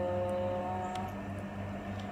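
A woman humming a held note, lullaby-like, that fades out about a second in, over a steady low electrical hum.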